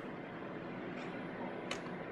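Steady low room hum, with one faint, short click near the end as the sample changer's glass enclosure door is pushed shut.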